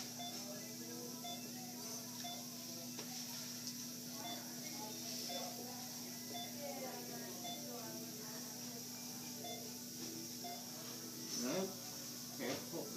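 Faint background music with low, indistinct voices over a steady low hum, and a short, high electronic beep repeating at an even pace, a little slower than once a second.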